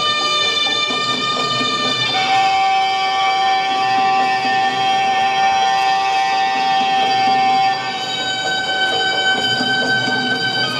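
Traditional Thai fight music led by a reedy, oboe-like pi, holding long notes: one note held for about five seconds from about two seconds in, then a jump to a higher held note near the end.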